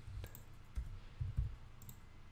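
A few scattered clicks from a computer mouse and keyboard, some dull and soft, with a couple of sharper clicks near the end.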